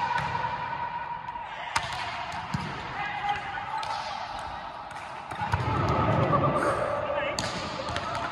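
A volleyball being hit and bouncing on a hard indoor court, a few sharp slaps with the clearest about two seconds in, echoing in a large sports hall, over players' voices.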